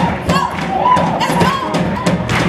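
Live gospel worship band playing, the drum kit's hits coming in a regular beat over the other instruments.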